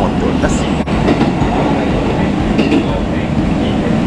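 Running noise of a moving train heard from inside the carriage: a steady rumble of wheels on the rails.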